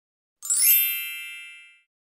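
A bright, shimmering chime sound effect: one sudden ding about half a second in, ringing with many high tones and fading away within about a second and a half, a logo sting.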